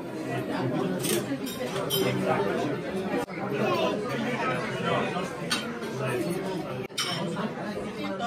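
Busy restaurant chatter: many people talking at once, with a few short sharp clicks.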